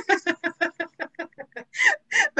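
Laughter: a run of quick 'ha' pulses, about seven a second, trailing off.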